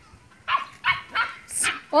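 Puppies play-fighting, giving a quick run of about five short, sharp barks and yaps.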